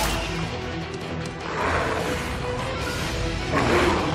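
Film score music under a fight scene, with two swelling whooshes or crashes of fight sound effects: one about a second and a half in and one near the end.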